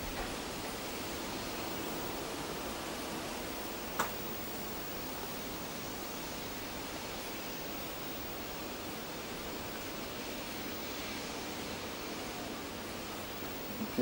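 Steady, even hiss of the location recording during a silent take, with a single sharp click about four seconds in.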